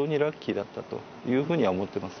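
A man speaking Japanese in a calm, conversational voice.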